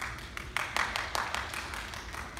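Scattered handclaps from a small audience, starting suddenly and running on as irregular, overlapping claps in a large hall.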